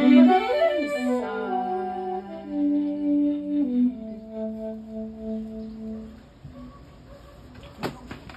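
Live saxophone and violin playing long, held notes together, dying away about six seconds in. A single sharp click near the end.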